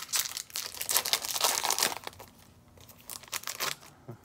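A trading-card booster pack's wrapper being torn open and crinkled, in quick crackling bursts for about the first two seconds. It goes quieter after that, with a few softer rustles near the end.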